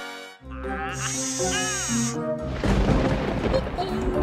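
Background music with a sudden sound-effect hit, then a low rumbling noise from about two and a half seconds in: a thunder sound effect.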